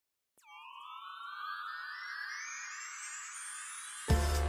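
A synthesized riser sound effect starts about a third of a second in. It dips briefly in pitch, then climbs steadily higher and grows louder for about three and a half seconds, building up to the intro music.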